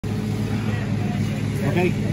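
A steady low hum runs throughout, with a man's voice saying "Okay" near the end.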